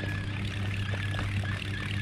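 Small boat's motor running steadily: a low even hum with a thin high whine over it.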